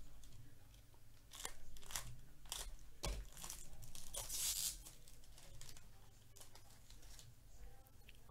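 Foil wrapper of a Bowman Chrome baseball card pack being torn open and crinkled: several short rips, a sharp snap about three seconds in, then the longest and loudest tear around four to four and a half seconds, followed by quieter rustling as the cards are handled.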